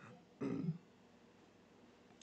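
A man softly clearing his throat once, briefly, about half a second in, in an otherwise quiet room.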